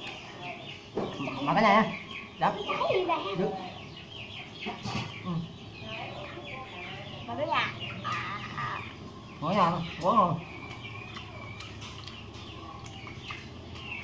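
Domestic chickens clucking and calling, with the loudest calls about a second in and again around ten seconds in, over a continual patter of higher chirps.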